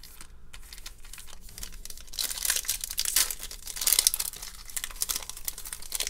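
Foil trading-card pack wrapper crinkling as it is picked up and handled, faint light clicks at first, then dense irregular crackling from about two seconds in.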